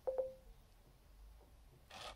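A short electronic beep, a low steady tone lasting about half a second, with a couple of clicks at its start, right at the beginning; faint room tone follows.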